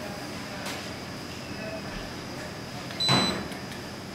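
Quiet room tone, then about three seconds in a short high beep from a handheld spectrometer as it takes a reading, together with a brief rustle of handling.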